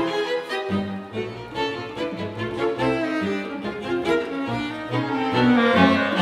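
A small string ensemble of violins, viola, cello and double bass playing contemporary chamber music live: held bowed notes that shift in pitch every half second or so over a low bass line.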